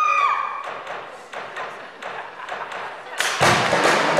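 Concert audience screaming, a high held scream fading out in the first half-second, then scattered knocks over quieter crowd noise. About three seconds in, loud music with a heavy drum beat starts suddenly.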